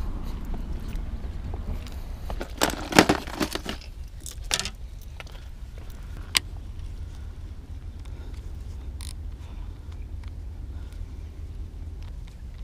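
Handling noise of fishing tackle and clothing: scattered clicks, rattles and scrapes, thickest about three seconds in, with a single sharp click about six seconds in, over a steady low rumble.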